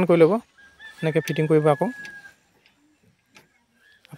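A man's voice in two short stretches, the second followed by a faint, thin, steady high tone that fades out about two seconds in.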